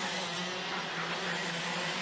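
A pack of IAME X30 125cc two-stroke racing kart engines running at speed, a steady engine drone.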